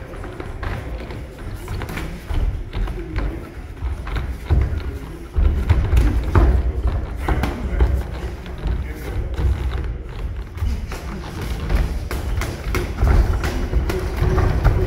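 Background music under repeated dull thuds of gloved punches and kicks landing and bare feet moving on the padded mat, with some faint voices.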